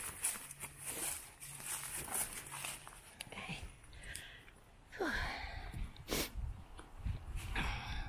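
Footsteps crunching through dry leaves and dead grass, an uneven step about every half second, with one sharp click about six seconds in.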